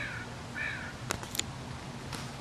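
A crow cawing: two short, arched caws, one at the start and another about half a second later. A few light clicks follow about a second in.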